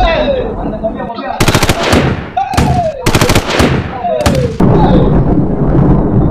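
Gunfire in three rapid bursts, about a second and a half in, at three seconds and just past four seconds. Between the bursts a man cries out, each cry falling in pitch.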